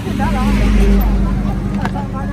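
A motor vehicle's engine hum on the road, swelling loudest about a second in as it passes, with voices talking over it.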